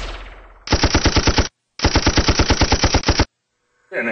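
Title-sequence sound effects: a loud hit that fades over about a second, then two bursts of rapid, evenly spaced mechanical rattling, about a dozen clicks a second, like machine-gun fire.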